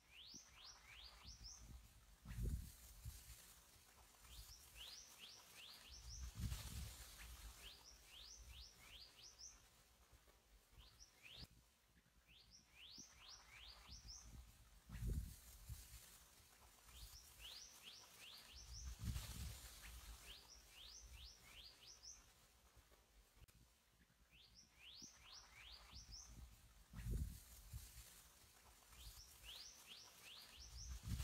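Faint bird calls: short rising whistles in groups of four or five, the groups repeating about every six seconds, with dull low thumps in between.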